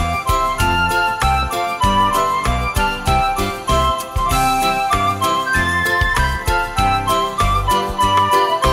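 Recorded instrumental music with a steady beat: a bass line and a high melody with percussion.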